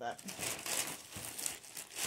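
Crinkling of packaging as clothing is handled, a continuous crackly rustle.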